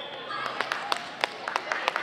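Scattered hand claps, about a dozen sharp claps spread over a second and a half, greeting a point just won in a volleyball match, with voices in the gym.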